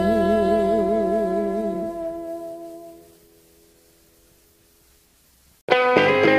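Recorded rock music: the song's final held chord, one note wavering with vibrato, fades out over about three seconds. After a quiet gap, the next song comes in suddenly with the full band near the end.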